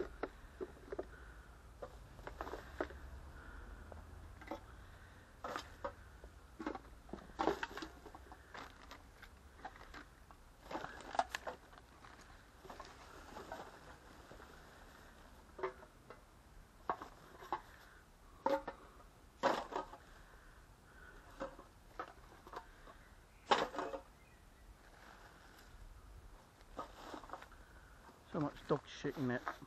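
Irregular crackling, rustling and clicking of litter and dry leaves being handled and sorted by hand.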